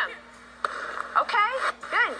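Short lull, then voices calling out during a volleyball drill, with a burst of noise coming in under them about two-thirds of a second in.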